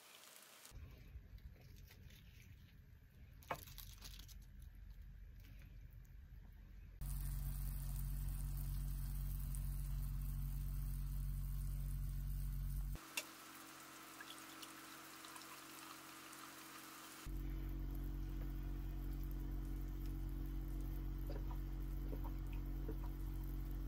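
Hot-pot broth simmering and bubbling in a pot over the flame of an Iwatani Tatsujin Slim cassette gas stove, with a few light clicks of chopsticks on the pot. The level steps up sharply about seven seconds in, drops about thirteen seconds in and comes back about seventeen seconds in.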